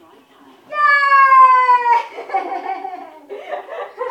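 A single long, high-pitched vocal call about a second in, falling slightly in pitch. It is followed by excited, broken chatter and laughter as the dog reaches its handler.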